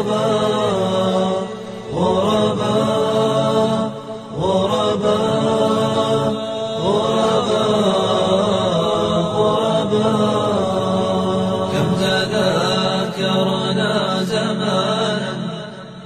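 Voices chanting an Arabic Islamic nasheed in long, drawn-out melodic lines over a steady low sustained drone. The phrases break off briefly about two and four seconds in and again near the end.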